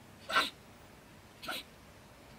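A stone marten (beech marten) giving two short, sharp calls about a second apart, the first louder: the agitated scolding of a marten that feels disturbed at its den.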